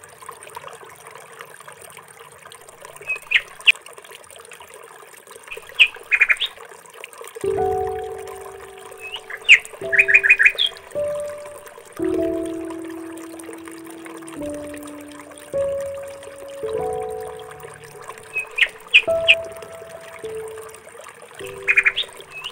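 Birds chirping in short, quick high trills a few times over, with slow instrumental background music of held notes coming in about a third of the way through.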